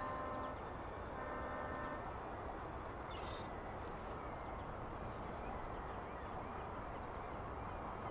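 Steady outdoor background noise, with a faint held tone of several pitches heard twice in the first two seconds and a brief high chirp about three seconds in.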